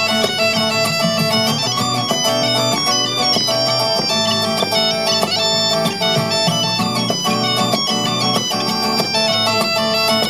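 Galician gaita (bagpipe) playing a quick melody over its steady drone, with an acoustic guitar strumming a rhythm accompaniment.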